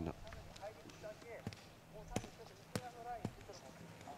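Faint distant voices calling in short rising and falling bursts, with four or five sharp clicks scattered through.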